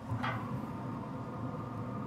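Traeger pellet grill running with a steady low fan hum while its lid is open and meat goes onto the grates, with a short squeak about a quarter second in.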